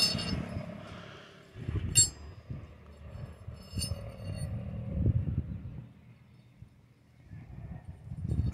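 Two light metallic clinks, about two seconds in and again near four seconds, as a hand-forged metal bottle opener is handled over an anvil. Soft handling rustle runs between them.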